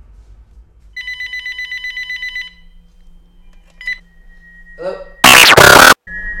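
A telephone rings with a rapid trilling tone about a second in, lasting about a second and a half, with a brief second ring a little later. Near the end a sudden, very loud harsh noise burst cuts in for under a second.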